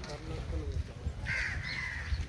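A crow cawing twice in quick succession, harsh calls in the last second, over faint voices and a low rumble.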